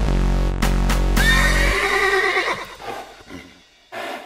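A song with a deep bass line plays its last notes, and a horse's whinny comes in over the end of it. The whinny carries on alone after the music stops and trails off.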